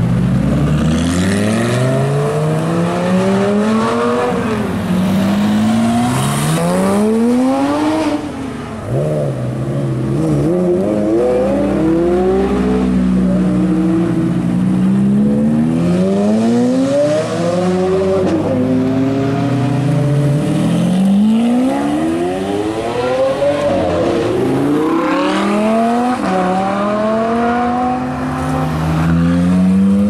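Supercars pulling away one after another, a Ford GT, then a Ferrari F430 Spider, then a Ferrari 458, with their V8 engines revving hard. The pitch climbs and drops back at each gear change, many times over.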